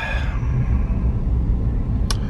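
Steady low road and engine rumble heard inside the cabin of a moving Mercedes-Benz car.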